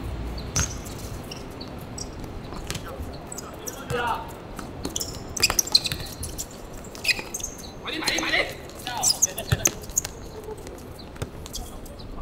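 Small-sided football match on a hard court: players' short shouts and calls come in bursts, over scattered sharp knocks of the ball being kicked.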